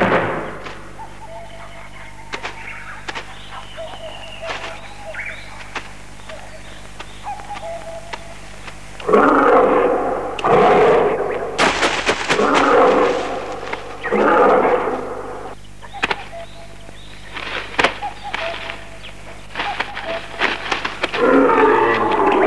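A tiger roaring in a run of loud, rough roars starting about nine seconds in and again near the end, after a quiet stretch with only faint background.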